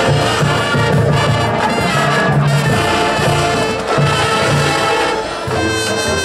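High school marching band playing live: massed brass carrying the melody over drums and front-ensemble percussion, with low notes pulsing in rhythm.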